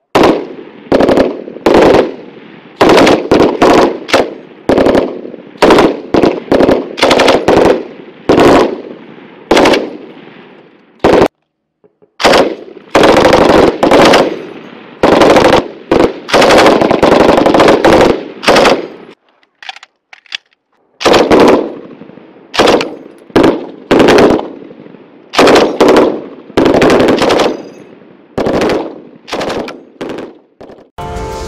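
M249 Squad Automatic Weapon light machine gun firing short bursts one after another, each burst trailing off in a ring of echo, with brief lulls about a third and two-thirds of the way through.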